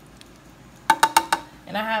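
Kitchen tongs clinking against the cooking pot: four quick clicks in about half a second, with a faint ring.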